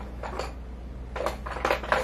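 Light, irregular clicks and clatter of small objects being handled while rummaging for a colored pencil, over a low steady hum.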